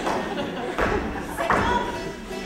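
Dancers' feet stamping on a wooden stage: three heavy thumps, about three-quarters of a second apart, during a flamenco-style dance.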